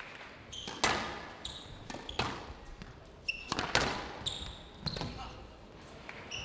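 Squash ball being struck in a rally: sharp knocks of racket and wall about every second and a half. Short high-pitched squeaks of court shoes come in between the knocks.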